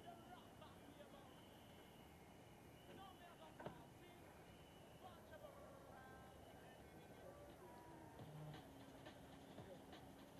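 Near silence, with faint scattered sounds and one sharp click a little before four seconds in.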